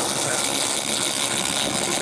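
Handheld 2000 W fiber laser cleaner ablating powder coat off aluminium, a steady, bright hiss.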